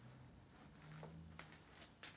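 Near silence, with faint sounds of a ball of wet fishing-bait clay being rolled between the palms, and a couple of small clicks in the second half.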